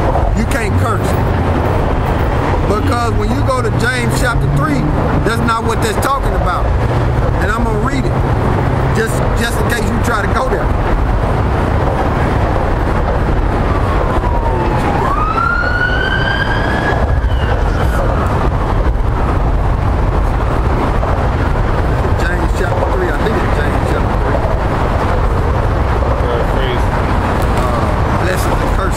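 Steady city street noise with passing traffic, and low, indistinct voices in the first part. About halfway through, one siren wail dips in pitch and then sweeps up.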